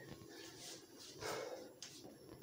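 Faint movement sounds of a person getting up from a crouch and stepping back: a few soft rustles and breaths, with a light knock near the end.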